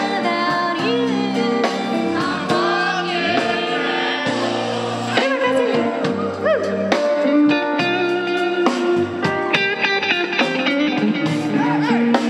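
Live band music: a woman singing long, wavering notes over a full band, with electric guitar more prominent in the second half.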